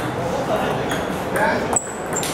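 Table tennis ball struck by paddles and bouncing on the table during a serve and the opening of a rally. A few sharp pings, the sharpest near the end, over a murmur of voices.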